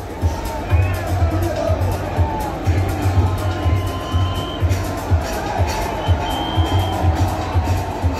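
Music with a steady bass beat played over a stadium's loudspeakers, with a large crowd's noise beneath it.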